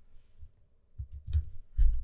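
A few separate clicks of computer keyboard keys, the loudest near the end.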